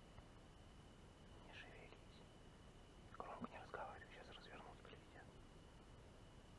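Faint whispering, mostly about three to five seconds in, over near-silent background with a faint steady high-pitched tone.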